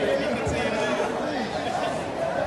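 Indistinct chatter of many spectators talking at once in a large sports hall.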